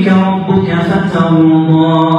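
A man reciting the Quran aloud in a melodic chant through a microphone, drawing out long held notes that glide slowly in pitch.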